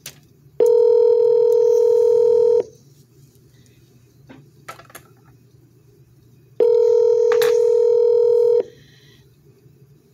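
Telephone ringback tone of an outgoing call that has not yet been answered: two steady rings, each about two seconds long, four seconds apart.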